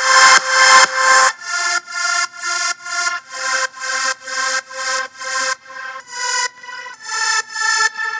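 Super-saw style synth chords built from sampled saw-wave notes played from a DAW drum rack, pulsing on every beat about twice a second. The first chord is louder and brighter for about a second, then the progression moves through several chord changes.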